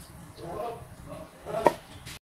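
A spatula plating stir-fried sausages in sauce onto a ceramic plate: soft handling sounds of food dropping, then one sharp clink of the spatula against the plate about one and a half seconds in.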